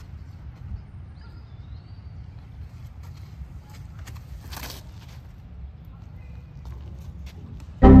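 A disc golf tee shot: a brief whoosh of the throw about four and a half seconds in, over a steady low rumble. Near the end a man's voice exclaims loudly.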